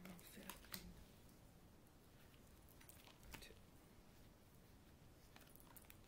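Faint, soft clicks and slides of a deck of cards being fanned out across a tabletop, a few at a time: several in the first second, a few more around the middle and near the end.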